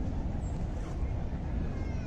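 Outdoor background: a steady low rumble, with a faint, brief high-pitched cry about half a second to a second in, and another near the end.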